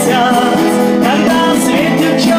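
A man singing a melody while strumming an acoustic guitar.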